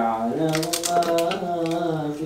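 A voice holding long, steady sung notes, with a quick series of crisp clicks from about half a second in as celery stalks are cut with a small knife and the pieces drop into a steel mixing bowl.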